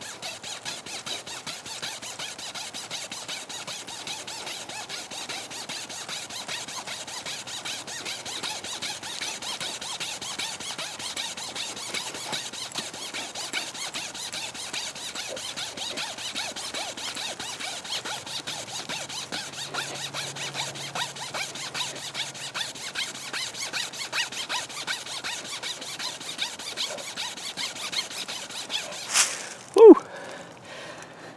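Wire pocket saw sawing through a sapling's trunk: a fast, steady back-and-forth rasping of wire on wood. A sharp, loud knock comes just before the end.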